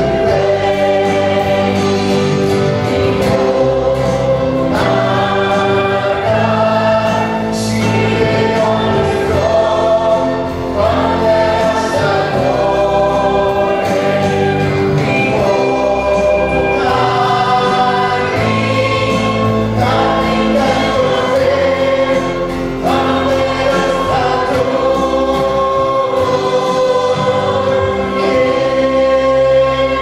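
Live contemporary worship song: a woman and a man singing into microphones over a band with acoustic guitar and flute.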